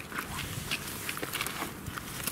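Footsteps and handling noises: scattered light scuffs and clicks as a cardboard firework cake is carried and brought down to the ground.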